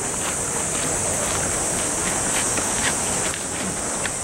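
A chorus of cicadas buzzing as a steady, high-pitched drone. It changes slightly about three seconds in.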